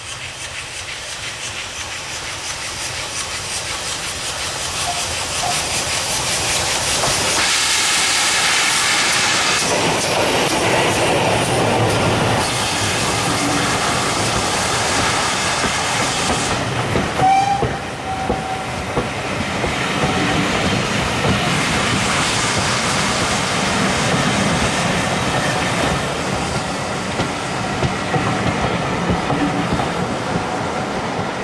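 A steam locomotive hauling a passenger train approaches, growing steadily louder, and passes close by with a loud hiss of steam about eight seconds in. Then the coaches roll past with rhythmic wheel clatter over the rail joints, and a brief squeal comes about seventeen seconds in.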